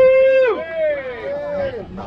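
A loud, held shout of about half a second that drops off at the end, followed by two shorter calls that rise and fall in pitch: a person whooping in celebration as a raffle number is called.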